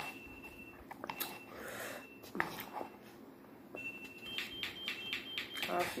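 Home alarm system beeping: a thin high electronic tone that sounds several times, then a run of quick short beeps in the second half. Under it are soft clicks of chopsticks in a noodle cup and eating sounds.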